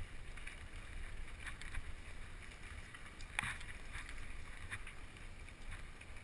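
Mountain bike rolling over a bumpy dirt trail: a steady low rumble of tyres and wind on the microphone, with light clicks and rattles of the chain and frame over bumps and one sharper knock about three and a half seconds in.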